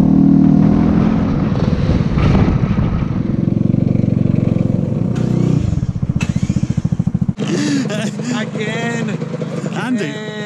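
Motor scooter engine running on the road with wind rush, the engine note changing as the scooter slows to pull into a parking bay. About seven seconds in it cuts off abruptly, and voices follow.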